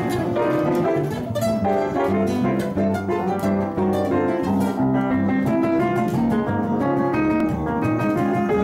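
Jazz trio of piano, guitar and double bass playing together at a steady level.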